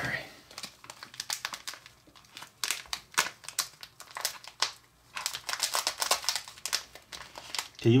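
Plastic candy pouch crinkling as it is handled and squeezed to shake out powder candy, in bursts of crackles with short lulls about two and five seconds in.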